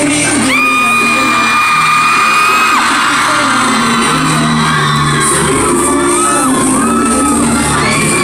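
Pop song played loud over a concert hall's sound system, with singing and fans whooping over it; a high note is held for about two seconds near the start.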